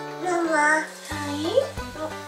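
A toddler's sing-song vocalizing: a drawn-out wavering note, then a short rising slide, over light background music with low held tones.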